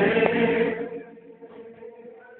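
A group of voices chanting a long held note in a hall, which dies away about a second in, leaving quieter background sound.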